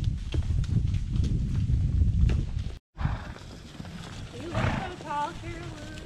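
Horse's hoofbeats and a heavy low rumble from a helmet-mounted camera on a walking horse, with scattered sharp knocks. After an abrupt cut about three seconds in, it is quieter, and short wavering voices are heard near the end.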